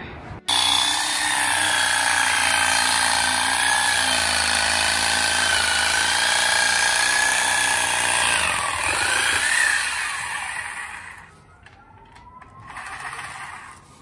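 Reciprocating saw running under load as it cuts through spruce branches: a steady motor whine whose pitch wavers with the cut. It starts abruptly about half a second in, rises briefly just before ten seconds, then dies away, and the last few seconds are much quieter.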